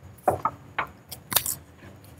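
About five light, sharp clicks and clinks, spread over two seconds, of kitchen utensils and dishes being handled.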